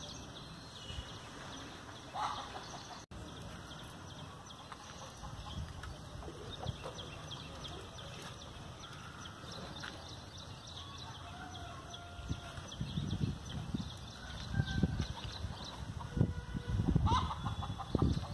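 Chickens clucking, with a few short calls and faint high bird chirps. Low rumbling bursts on the microphone grow louder in the second half.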